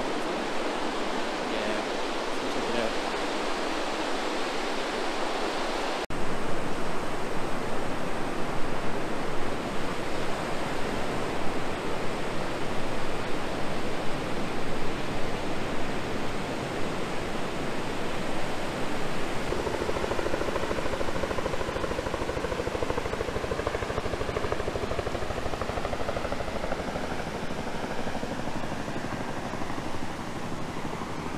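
Ocean surf breaking on a wide sandy beach: a steady rush of noise. About six seconds in it turns abruptly louder and deeper, with more low rumble.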